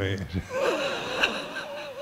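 A man laughing quietly, a breathy, high-pitched laugh that starts about half a second in and wavers in pitch.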